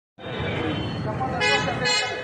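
Vehicle horn honking twice in short toots near the end, over street noise and the chatter of a crowd.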